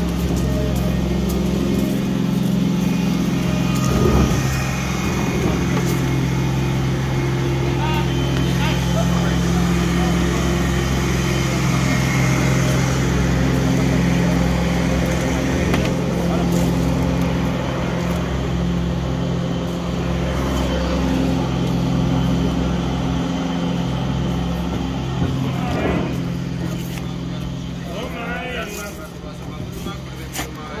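A steady low machine hum, like an engine or generator running, continuing unchanged throughout, with indistinct voices that grow clearer near the end.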